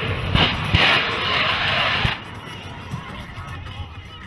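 A loud rushing jet roar for about the first two seconds as a CF-18 Hornet plunges and the pilot ejects, with a few dull thumps in it, then dropping away to a lower mixed sound under a music bed.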